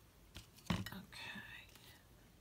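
A light knock a little over half a second in, followed by a soft whispered murmur from a woman's voice lasting under a second.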